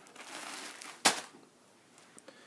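Plastic bag of aquarium filter media crinkling as it is handled, with one sharp click about a second in.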